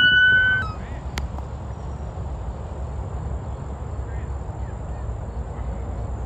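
An emergency vehicle siren holding a steady high note cuts off about half a second in. A steady low rumble follows, with a faint, steady high-pitched whine above it.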